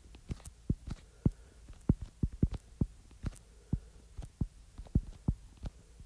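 Stylus tip tapping and clicking on a tablet's glass screen while writing, in short irregular taps a few a second.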